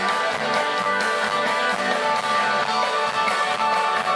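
Live indie rock band playing with a steady, driving beat: strummed acoustic guitar, electric guitar and drum kit.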